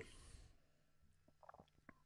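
Near silence: room tone, with a few faint ticks in the second half.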